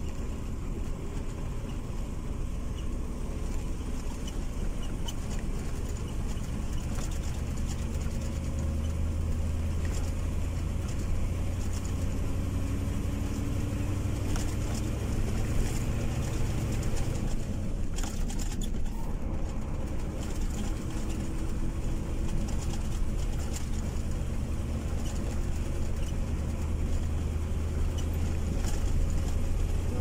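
Engine and tyre-on-road noise heard from inside a moving car's cabin: a steady low rumble, with a faint engine hum that drifts a little in pitch.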